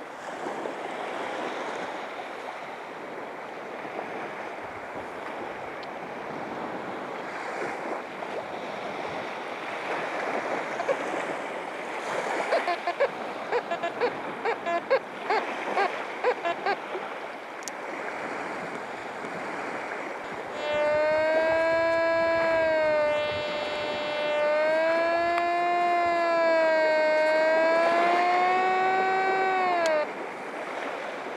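Nokta Force Core metal detector sounding over wet beach sand. A run of short beeps comes about halfway through, then a loud steady signal tone begins about two-thirds in, its pitch rising and falling as the coil sweeps over a buried target, and it cuts off abruptly. Waves and wind go on underneath.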